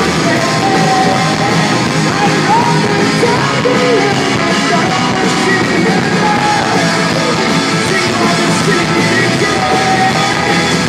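Rock band playing loud, live: distorted electric guitars and drums under a male lead vocal. The phone's microphone is overloaded, so the bass distorts.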